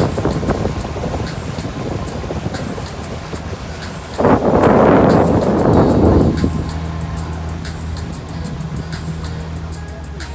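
Wind buffeting the microphone aboard a moving pontoon boat, with a stronger gust about four seconds in that lasts about two seconds. A low steady hum runs underneath in the second half.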